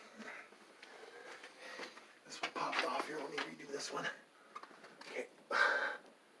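Low, indistinct speech: a man muttering while he works.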